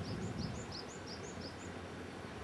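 A bird giving a quick run of about eight short, high chirps, each hooking downward, which stop shortly before the end, over a faint, steady background hiss.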